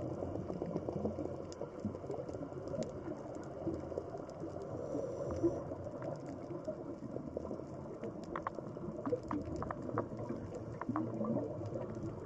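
Underwater ambience picked up by the diving camera: a steady, muffled watery rush with many small clicks and crackles scattered through it, more of them in the second half.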